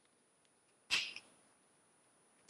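A single short, hissy breath about a second in, against quiet room tone.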